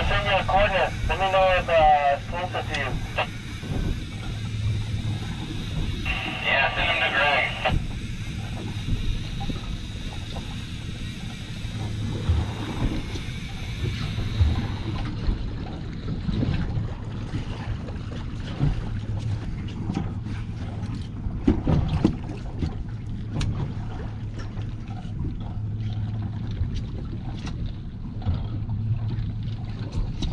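A boat's engine running steadily under wind on the microphone and water against the hull, with scattered knocks. Near the start and again about six seconds in there are short bursts of a thin, tinny-sounding voice.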